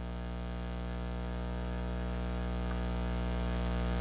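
Steady electrical mains hum with a buzzy edge, a low drone carrying many even overtones, growing slightly louder over the few seconds.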